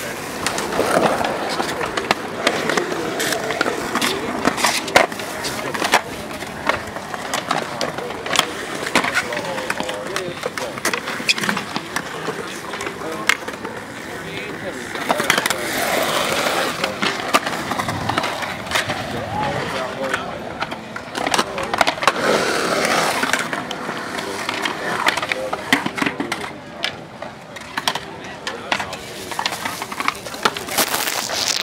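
Skateboard wheels rolling on smooth concrete in a skatepark bowl, a continuous rough rumble broken by frequent sharp clicks and clacks as the board crosses joints and lands. Voices come and go in the middle of the stretch.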